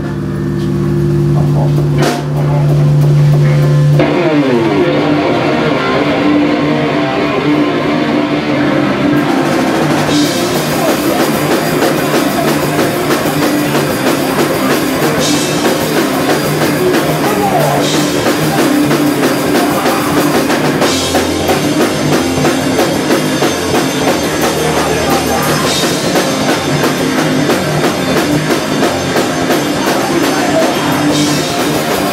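Crust hardcore band playing live. A held, ringing low chord opens, then about four seconds in the drums, distorted guitar and bass come in together at full volume and keep going.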